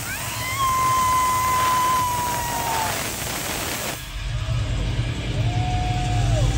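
Live concert crowd noise between songs, with a long high cry that rises, holds and slides down. About four seconds in, a heavy pulsing low beat starts from the PA, with another drawn-out high cry over it.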